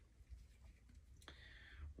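Near silence with a few faint clicks of small plastic parts, a toy blaster pistol being pushed into a plastic holster on an action figure; the sharpest click comes a little past halfway, followed by a faint hiss.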